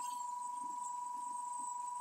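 A steady, faint whine at a single pitch from the running battery, boost-converter and motor rig.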